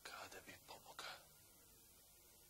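A man whispering briefly, a few short breathy syllables in the first second, then near silence.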